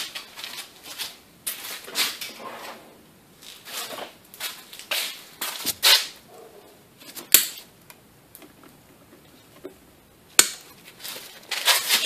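Scattered clicks, scrapes and rustles of a gloved hand working a hand tool against a van's transmission case, with two sharp, isolated snaps at about seven and ten seconds in.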